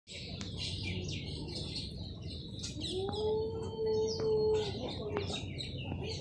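Small birds chirping and twittering continuously. About halfway in, a long, steady low tone is held for about two seconds.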